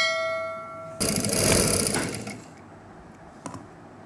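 Sound effect of a subscribe-button animation: a bright bell-like ding that rings for about a second, then a louder swoosh that starts suddenly and fades out over about a second and a half.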